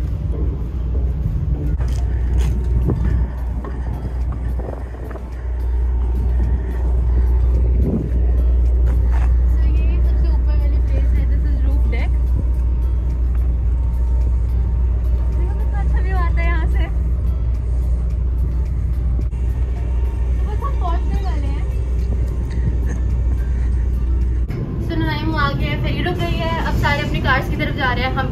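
Steady low rumble of wind on the microphone on the open deck of a moving ferry. It starts about five seconds in and cuts off shortly before the end, with faint voices in the background.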